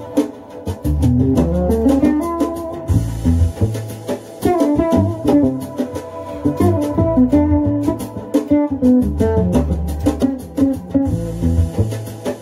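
Fretless electric bass played fingerstyle: an improvised solo line of quick plucked notes in A minor.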